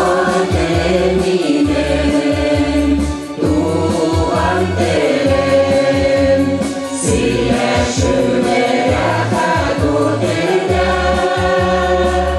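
Mixed choir of women's and men's voices singing a Tatar song together, with instrumental accompaniment that has a steady bass beat.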